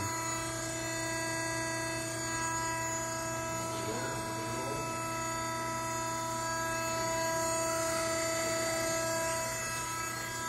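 Haeger 618 hardware insertion press's hydraulic pump motor running at idle: a steady hum made of several fixed tones. One of the higher tones drops out near the end.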